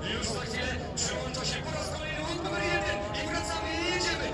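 Stadium announcer talking over the public-address system above crowd hubbub, with speedway motorcycle engines running as the bikes line up at the start gate.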